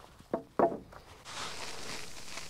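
Two short knocks a quarter second apart as gear is handled on a wooden table, then a steady hiss of breeze in the trees.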